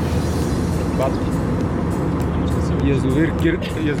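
Airliner cabin noise in flight: a steady low drone of engines and airflow.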